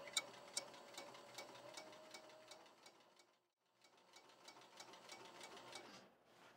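Industrial walking-foot sewing machine stitching slowly through upholstery leather: faint, even ticks about two or three a second, one per stitch, with a faint motor hum in the first half and a short pause near the middle.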